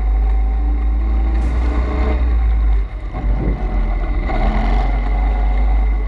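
Pit bike's single-cylinder engine running under way through a turn, heard from an onboard camera with wind buffeting the microphone. The sound drops briefly about halfway through.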